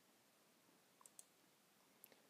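Near silence with two faint computer-mouse button clicks about a second in, a fraction of a second apart.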